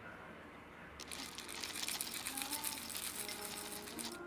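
Dry chocolate granola clusters poured into a ceramic bowl of yogurt: a dense, crackling rattle of many small pieces landing, starting about a second in and cutting off suddenly at the end.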